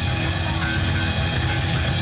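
Live rock band playing, with electric guitars over bass and drums, heard loud and steady from among the audience.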